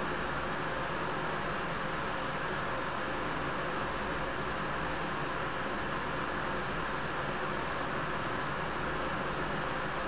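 Steady, even background hiss with a thin, faint high tone running through it. No distinct events stand out, and the e-cigarette draw and exhale make no audible change.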